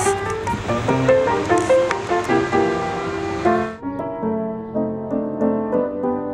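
Upright piano played outdoors: a flowing run of melody notes over chords. About four seconds in, the high background hiss drops away while the playing carries on.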